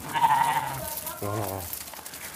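Fat-tailed sheep bleating: two held calls, the second lower and shorter, starting about a second and a quarter in.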